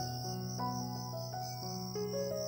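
Soft background music of slow, held notes over a steady high chirring of crickets.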